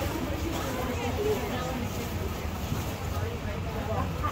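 Indistinct chatter of people talking around the stalls, no clear words, over a steady low rumble.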